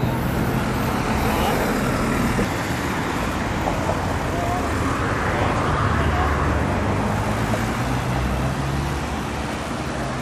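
Road traffic noise: a steady wash of vehicles on the highway, with a low engine hum that grows stronger about halfway through.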